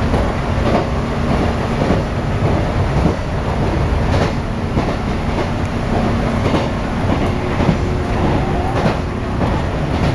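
Inside a JR West 413-series AC/DC electric multiple unit coasting through a dead section: a steady running rumble with wheels clicking over rail joints a few times. About seven seconds in, a new steady hum starts, as on-board power returns and the cabin lights come back on at the end of the dead section.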